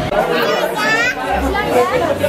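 Several people talking over one another in a large room, with one voice rising in pitch about halfway through.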